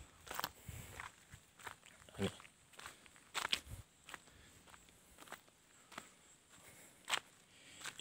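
Faint footsteps on a dirt path, at an unhurried walking pace of about one or two steps a second.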